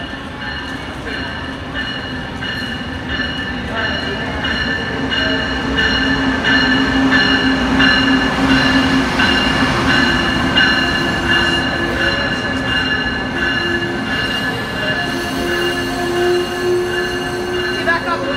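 Amtrak passenger train rolling along the platform inside an underground station: a low rumble with several steady high-pitched squealing tones from the wheels. It grows louder towards the middle and stays loud as the cars go by.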